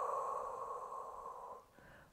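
A woman breathing out slowly and steadily through her mouth, a long exhale that fades out about one and a half seconds in. It is the exhale phase of Pilates diaphragmatic breathing, drawing the abdominals in.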